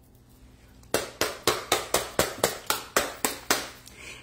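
Hands beating a quick drumroll on a tabletop: about a dozen sharp, even strokes, roughly four a second, starting about a second in.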